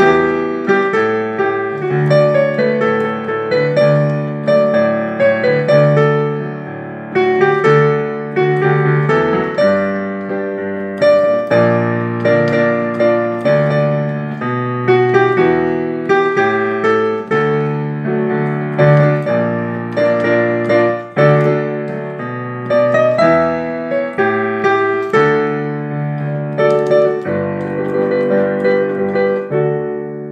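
Piano playing a hymn tune in full chords over a bass line, new notes struck in a steady, moderate rhythm.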